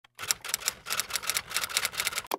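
Typing sound effect: a quick, even run of key clicks, about seven a second.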